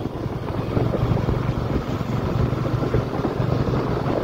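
Two-wheeler's engine running steadily at riding speed as a low hum, with wind noise on the microphone.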